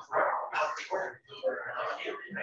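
Indistinct talking: a voice speaking in short broken phrases, with no words clear enough to make out.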